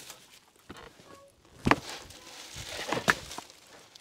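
Boots scuffing and crunching in dry leaf litter, with a couple of sharp knocks, as a loaded four-wheeler is shoved up onto two wheels by hand.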